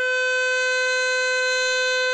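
A bugle holds one long, steady note of a slow bugle call.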